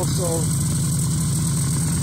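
Vintage Scorpion Lil-Whip snowmobile engine idling steadily.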